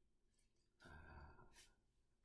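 A man's brief low sigh about a second in, ending in a short breathy hiss, against near silence.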